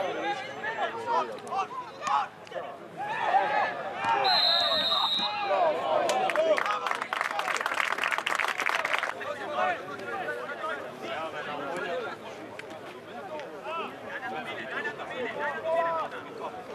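Players and spectators shouting on a football pitch; a referee's whistle blows once for about a second, about four seconds in, followed by a couple of seconds of hand clapping.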